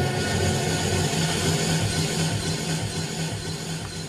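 Steady low hum of car engines idling, with a noisy background, easing slightly near the end.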